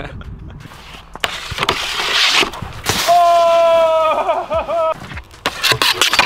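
Snowboard sliding over packed snow on the run-in to a handrail, joined partway through by a long held shout that wavers at its end, then a few sharp knocks near the end as the board meets the rail.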